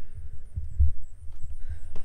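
Irregular dull low thumps of footsteps on the RV's floor near the entry door, the loudest a little under a second in.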